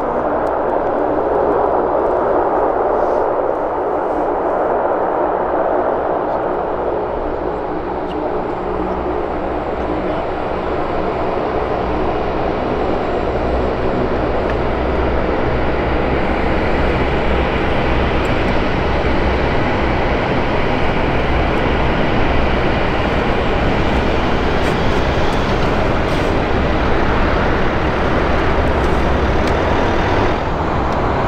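C-130H Hercules's Allison T56 turboprop engines running on the runway, a steady drone, with the number 2 engine shut down. A low rumble grows stronger about halfway through.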